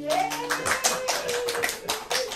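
Hand clapping applauding the end of a live song, a quick, uneven run of claps in a small room, with one held tone sounding alongside.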